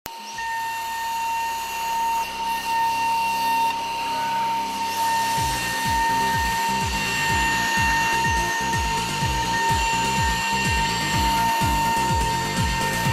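High-speed milling spindle of a Kongsberg cutting plotter whining steadily at a high pitch as it mills sheet material. Background music with a steady beat comes in about five seconds in.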